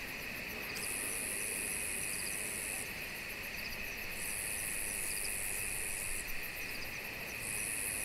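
Night insect chorus: crickets trilling steadily, with a higher-pitched insect buzz that comes in bouts of about two seconds, stopping and starting three times.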